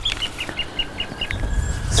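A bird calling a quick run of about seven short, high notes, about six a second, which stops a little over a second in, over a steady low rumble.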